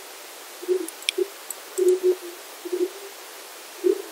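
Steady hiss from a streaming microphone's noise floor, before noise suppression is switched on, with a few faint short low sounds and a single small click about a second in.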